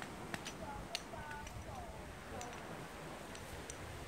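Trekking pole tips clicking sharply and irregularly against the trail as hikers walk, a few clicks a second with the loudest about a second in.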